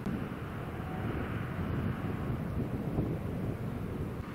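Wind buffeting the camcorder microphone over a low outdoor rumble, with a rushing noise that is a little stronger for a few seconds and then drops away at the end.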